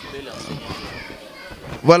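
Faint hubbub of children's voices, a busy murmur with no single clear speaker, until a man's voice comes in near the end.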